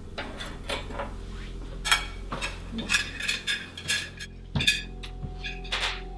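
A metal fork clinking against a ceramic plate: a string of irregular, sharp clinks with a short ring, the loudest about two seconds in and again past the middle.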